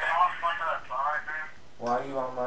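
Speech over a telephone: a thin voice with no low tones talks for about a second and a half. Near the end a fuller man's voice in the room starts speaking.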